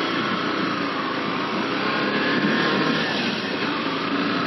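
Yamaha FZ V3's 149 cc single-cylinder engine pulling away in first gear, its pitch rising as the bike gains speed.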